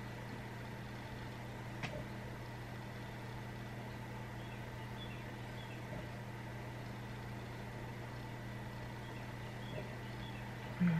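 Steady low hum and faint hiss of room tone, with a single faint tap about two seconds in.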